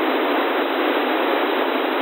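Steady hiss from an Airspy HF Discovery receiver in narrowband FM with squelch off, on a CB channel with no station transmitting. It is the open-channel noise left after the talking station unkeys.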